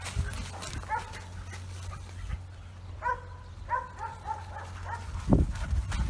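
Puppies play-wrestling, giving a string of short, high-pitched yips, most of them bunched together about three to four seconds in.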